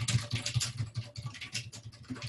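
Fast typing on a computer keyboard: a quick, uneven run of key clicks, several a second.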